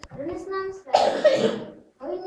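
Children talking among themselves in a room, with a loud cough about a second in.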